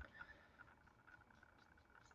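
Near silence: room tone with a faint steady high tone.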